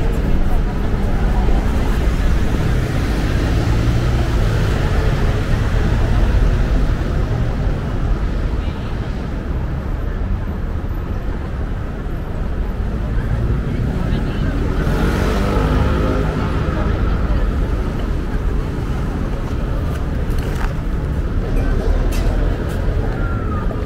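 City traffic: cars and taxis driving past on cobblestones, a steady rumble of engines and tyres, with one vehicle passing closer about two-thirds of the way through.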